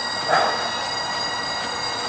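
Bagpipes sounding long, steady held notes over their drones, with a short louder sound about a third of a second in.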